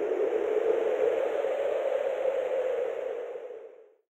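Tail of the closing title card's whoosh sound effect: a steady hiss with a low hum under it, fading out and ending just before the end.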